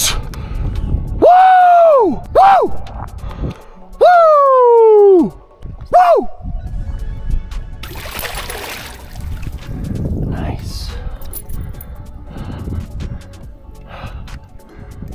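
A man yells loudly in celebration four times in the first six seconds, drawn-out whoops, the longest falling in pitch. After that, water splashes and sloshes as a muskie thrashes in the landing net.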